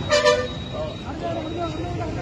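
A vehicle horn gives one short toot right at the start, followed by people's voices talking.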